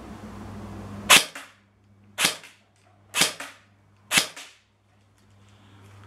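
CYMA MP5 airsoft electric gun firing four single shots about a second apart, each a short sharp snap with a fainter click just after.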